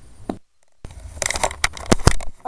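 Handling noise of a camera being picked up and moved: crackly rubbing and a quick run of clicks and knocks on the microphone, starting about a second in. Just before it the sound cuts out almost completely for a moment, the camera's audio dropping to mute.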